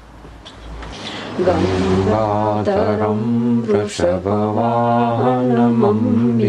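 A man's voice chanting a mantra in long held notes, coming in about a second and a half in after a quiet start.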